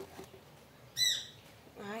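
A bird gives one short, high squawk about a second in.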